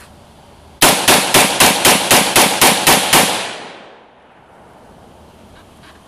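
AR-15 rifle fired semi-automatically in a rapid string of about ten shots, about four a second, the last report trailing off for about a second.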